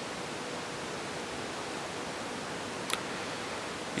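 Steady background hiss with a faint low hum, and one brief click about three seconds in.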